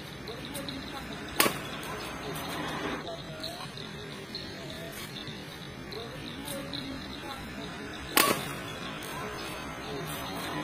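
Badminton racket hitting a shuttlecock: two sharp, loud strikes about seven seconds apart. Voices murmur faintly underneath.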